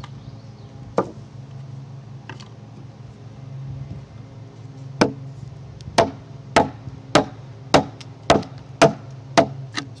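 An axe chopping into a hewn timber beam, cutting across the grain to remove waste from a notch for a joint: one blow about a second in, then a steady run of about nine sharp chops a little under two a second in the second half.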